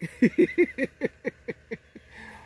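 A man laughing: a run of about ten short pitched "ha" pulses that come slower and fade toward the end.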